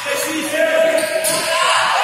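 Futsal ball knocks and bounces on a wooden sports-hall floor amid players' shouts, echoing in the hall; voices grow louder near the end as spectators start yelling.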